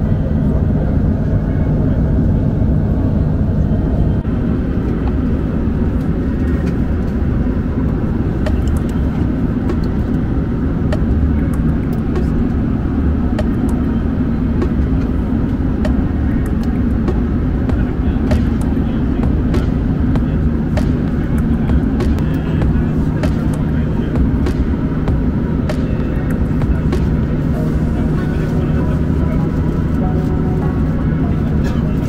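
Steady engine and airflow noise inside the cabin of an Embraer E190-E2 jet airliner in cruise, a low drone with a constant hum. From about seven seconds in, light clicks and crinkles come through it as a plastic water bottle and menu pages are handled.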